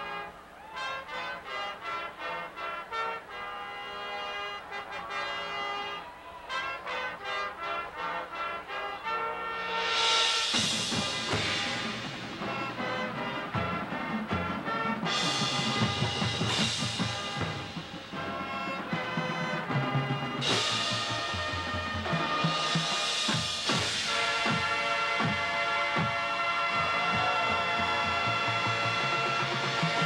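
High school marching band playing, brass and percussion: about ten seconds of short repeated pulsing notes, then the full band comes in louder with low drum hits and several cymbal crashes.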